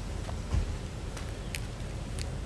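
Steady low outdoor rumble with one soft thump about half a second in, a sneaker landing on the exercise mat as she steps forward into a lunge, and a few faint high ticks.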